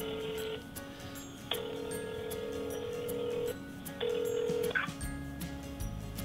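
Telephone ringback tone of an outgoing call: a steady tone of about two seconds, repeating after a gap of about a second. The third ring is cut short just before five seconds in as the call is picked up.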